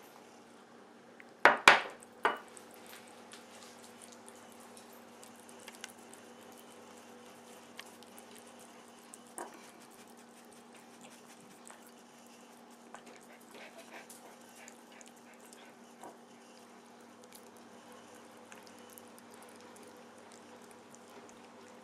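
A ceramic bowl knocks on a wooden table three times in quick succession, then a cat chews and licks chunks of melon with faint, wet, scattered clicks and smacks, over a steady low hum.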